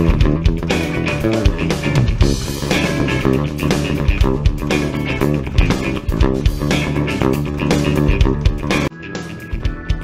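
Bass guitar playing a line over a full rock backing track. The bass stops suddenly about nine seconds in, and the backing track carries on quieter.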